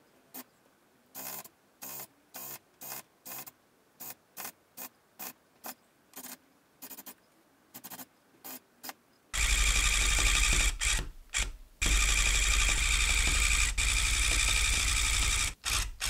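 A series of short, quiet clicks about twice a second. About nine seconds in, an electric tufting gun starts and runs loudly, punching yarn into the backing cloth. It stops briefly twice around the eleven-second mark, then runs on until just before the end.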